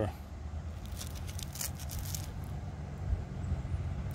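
Steady low background rumble, with a few faint clicks and rustles from a gloved hand handling a small metal key.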